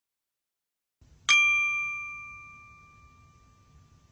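A single bright bell-like ding, a chime sound effect for an animated logo, struck about a second in and ringing out as it fades over about two seconds.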